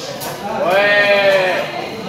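A person's long, drawn-out excited yell: one held vowel lasting about a second, its pitch arching slightly up and then down.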